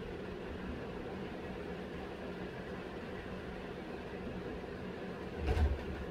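Steady low background hum of the room, like a fan or appliance running, with a single dull low thump about five and a half seconds in.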